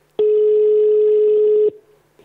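Telephone ringback tone on an outgoing call to a contestant's phone, heard over the studio phone line: one steady tone lasting about a second and a half, signalling that the called phone is ringing.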